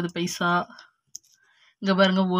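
A woman speaking, with a pause about a second in that holds a single light click of coins being handled in the hand.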